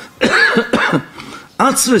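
A man lecturing into a microphone. There is a short, rough voiced sound near the start, a brief lull, then speech again near the end.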